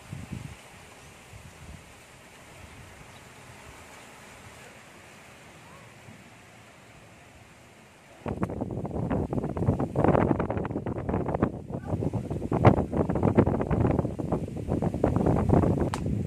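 Faint, steady outdoor background hiss, then from about eight seconds in, loud, uneven gusts of wind buffeting the microphone.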